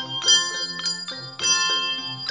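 Handbell choir playing a gospel hymn arrangement: bell chords are struck several times in quick succession, each left ringing so the notes overlap.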